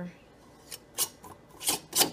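Metal screw band being twisted onto the threads of a glass mason jar: a few short grating rasps, the last two the loudest.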